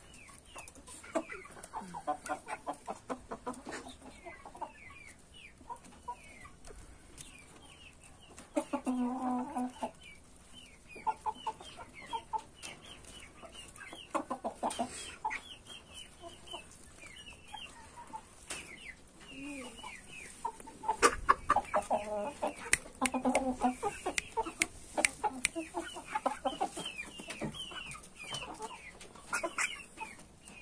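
A group of young chickens clucking with many short, high, falling peeps, among sharp taps of beaks pecking. Louder clucking comes about nine seconds in and again past twenty seconds.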